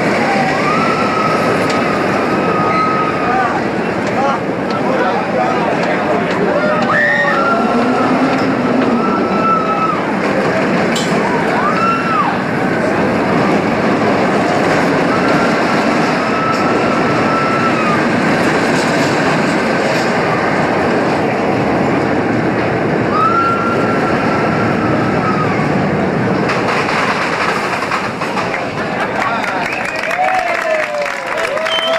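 Roller coaster train running on its track with a steady, heavy rumble, while the riders scream several times in long held cries.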